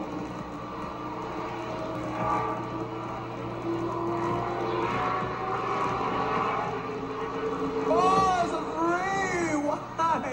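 Stock car engines running steadily as the cars lap an oval track, heard on an old videotape recording. Near the end an excited announcer's voice rises over them.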